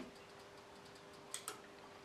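Near silence with a faint steady hum, broken by two faint ticks in quick succession about one and a half seconds in.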